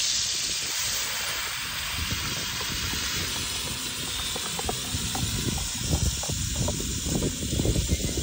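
Wet curry seasoning sizzling in hot oil in an iron pot over a wood fire, a steady hiss as it is poured in and stirred. An uneven low rumble joins it in the second half.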